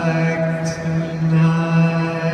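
Live concert music: a male singer holding long, steady sung notes over a sustained keyboard accompaniment, in a large hall.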